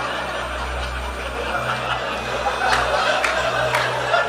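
Live audience laughing, with a few sharp claps in the second half.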